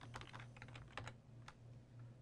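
Faint computer keyboard typing: a quick run of keystrokes through the first second, then one more at about a second and a half, over a low steady hum.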